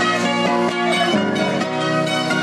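Acoustic guitar played live, strummed and plucked in a lively tune, with other plucked string instruments joining in.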